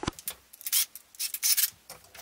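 Several short bursts of scraping and rubbing as screws and a cordless drill are worked on the wooden board to fix a stainless steel mending plate.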